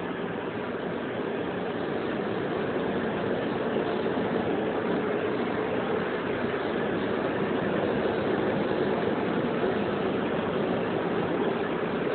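Compact upright floor scrubber working a wet hardwood floor: its motor runs with a steady drone and a faint steady whine throughout.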